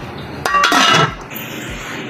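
A brief clink of kitchenware being handled, about half a second in.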